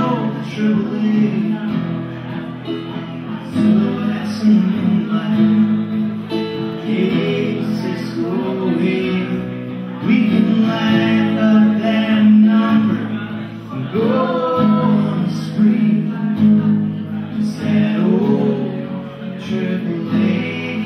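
Live acoustic folk song: a man singing while strumming an acoustic guitar.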